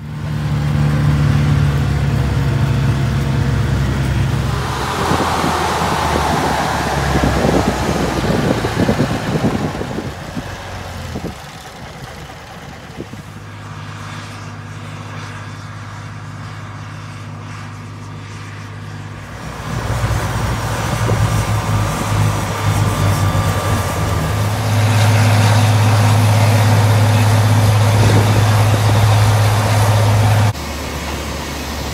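Diesel engine of a truck-mounted well-drilling rig running steadily, with a rushing noise that swells and fades a few seconds in. In the last third the engine hum is louder and very even.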